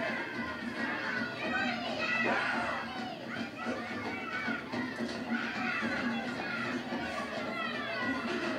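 Film soundtrack played over a hall's speakers: shrill children's voices laughing and jeering over a music score.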